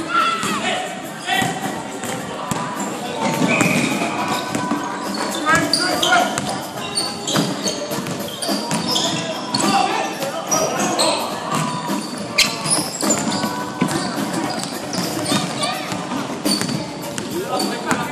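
Basketball game sounds: a ball bouncing on a wooden court with scattered knocks and thuds of play, mixed with players' voices.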